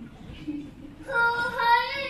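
A woman's voice singing one long held high note through a handheld microphone, coming in about a second in after a quieter moment.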